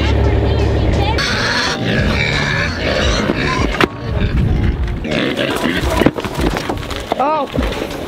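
Pigs squealing and grunting at feeding time, eager for their feed, with one short rising-and-falling squeal near the end.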